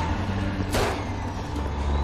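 Soundtrack of a TV drama: a heavy truck's engine rumbling low and steady, with one sharp gunshot a little under a second in.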